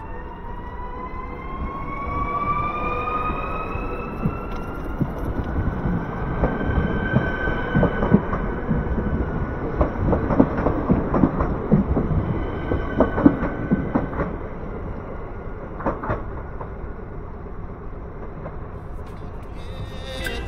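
ZSSK class 861 electric multiple unit pulling away from the platform. Its traction motor whine rises in pitch over the first several seconds as it accelerates. The wheels then clatter over the rail joints as the coaches pass close by, and the sound fades near the end.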